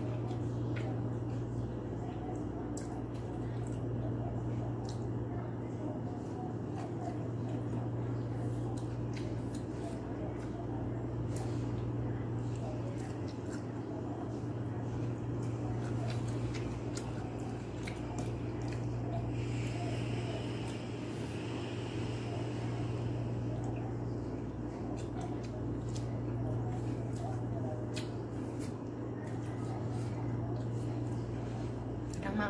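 Fingers squishing and picking through wet vegetables in a stainless steel bowl, with scattered small clicks, over a steady low hum.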